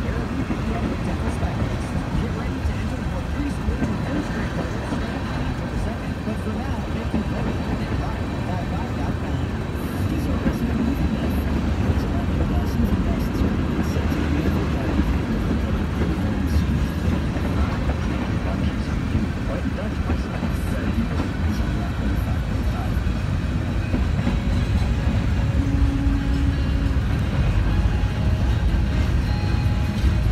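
Freight train cars rolling past: a steady rumble and rattle of steel wheels on the rails, growing a little louder about ten seconds in.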